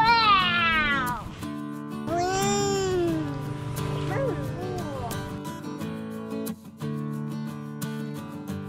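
Background music with steady held chords, and over it high, gliding squeals from a young child: a long falling one at the start, an arching one about two seconds in, and short wavering ones about four seconds in.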